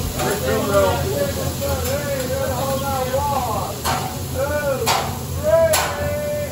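Food sizzling on a teppanyaki hotplate, with sharp metal clinks from the chef's spatula on the griddle three times in the second half. Voices chatter underneath.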